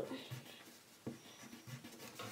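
Faint scratching of a pen on paper while drawing, with a light tap about a second in.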